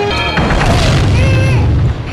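A held music chord breaks off and a loud, low boom with a long rumble hits about half a second in, with a raised voice over it.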